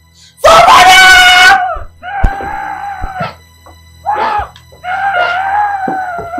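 A person screams very loudly for about a second, followed by several long, wavering wailing cries, over a soundtrack of background music.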